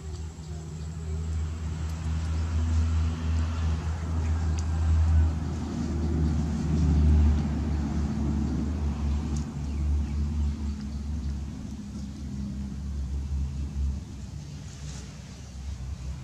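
Low engine rumble of a motor vehicle, swelling over the first seven seconds or so and then slowly fading.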